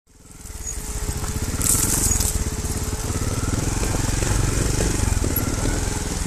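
Trials motorcycle engine running at low speed while the bike picks its way down a rocky trail, fading in at the start. There is a brief hiss about one and a half seconds in.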